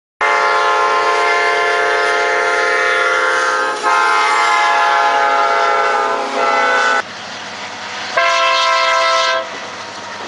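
Diesel freight locomotive's air horn sounding two long blasts and a short one. The sound then cuts abruptly to the lower rumble of the passing train, and one more blast of about a second follows. The long-long-short-long pattern is the grade-crossing warning.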